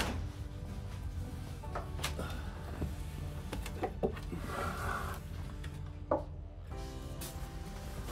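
Background music, with a few short wooden knocks and clunks as a boat's hinged wooden engine hatch is handled and lifted open.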